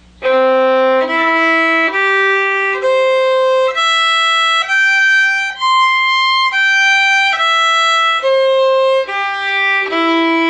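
Fiddle playing a two-octave C major arpeggio slowly, one steady held note per bow stroke a little under a second each, climbing to the top note about halfway through and stepping back down.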